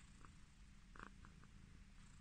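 Tabby cat purring softly and steadily while being petted, with a few faint light ticks over the low purr.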